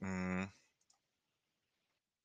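A man's voice holding one short, level hesitation sound for about half a second at the start, then nothing.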